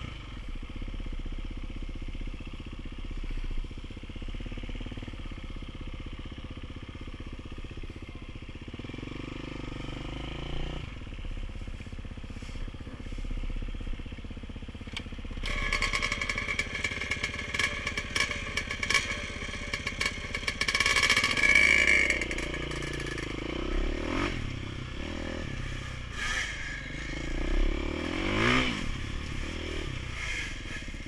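Dirt-bike engines idling steadily, then from about halfway through, getting louder as the bikes are revved and ridden off, with the engine pitch sweeping up and down several times near the end.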